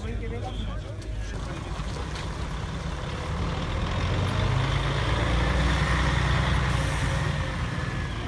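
A diesel coach's engine running as it drives close past and pulls away. The low rumble grows louder from about a second in and is strongest in the second half, with a brief hiss near the end.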